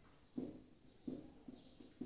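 Faint marker pen writing on a whiteboard: four short taps and scrapes as the letters are stroked out.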